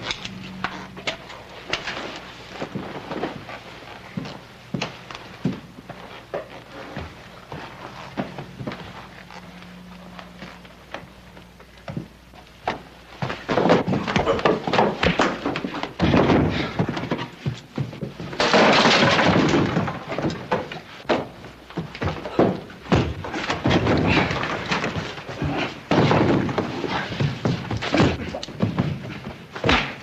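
Fistfight sound effects: repeated punches and thuds with heavier crashes and slams, sparse at first, then much louder and busier from about halfway through.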